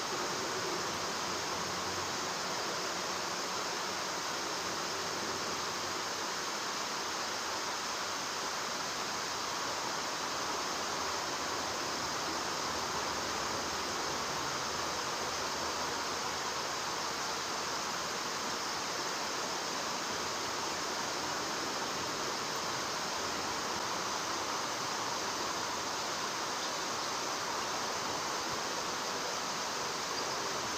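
Steady hiss of flowing river water, unbroken and even, with no distinct sounds standing out.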